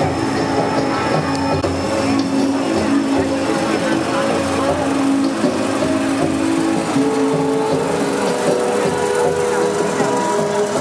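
Slow sung melody with long held notes, a chant or hymn of many voices, over the hubbub of a street crowd and the low running of a float truck's engine.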